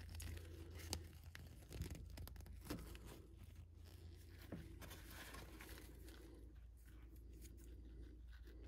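Faint handling of a plastic action figure and its cloth robe: fingers rubbing fabric and plastic, with a few small plastic clicks as the lightsaber hilt and blade are fitted into the figure's hand, over a low steady hum.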